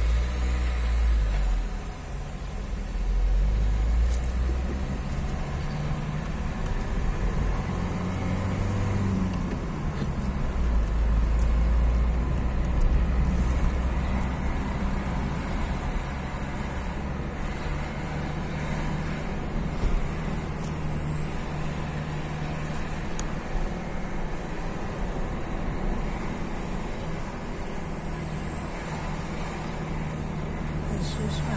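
A car engine running with low road rumble, heard from inside the cabin as the car moves off and drives along a road. The rumble swells in the first few seconds and again around ten seconds in.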